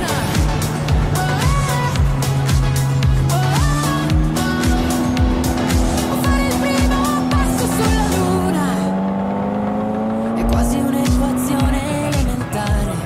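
Ferrari F40's twin-turbo V8 pulling away, its note climbing slowly in pitch over several seconds, heard under music with a steady beat.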